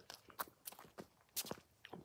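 Footsteps of a person walking, a series of faint separate steps.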